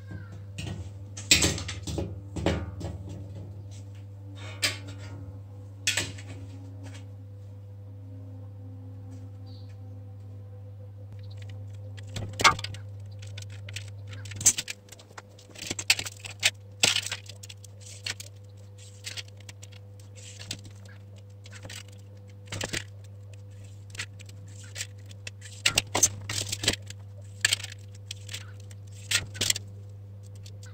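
Scattered sharp clinks and clatters as a steel breastplate and a metal straightedge are handled and set down on a steel workbench while lines are marked out on the plate, more frequent in the second half. A steady low hum runs underneath.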